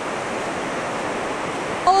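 Steady, even wash of surf on a sandy beach.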